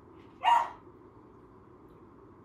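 A small puppy gives one short, sharp bark about half a second in.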